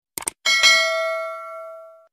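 Notification-bell sound effect from a subscribe animation: two quick clicks, then a bright bell ding that rings on and fades out over about a second and a half.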